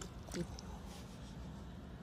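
A small splash as something drops into calm water right at the start, followed by a short sound about half a second in, then a low, steady outdoor background.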